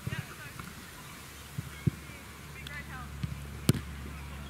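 An Australian rules football kicked off a boot: one sharp, loud thud near the end, with a couple of softer thumps a couple of seconds before it.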